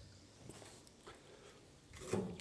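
Near silence, with a couple of faint clicks as the metal firebox door of a wood-burning cookstove is unlatched and swung open.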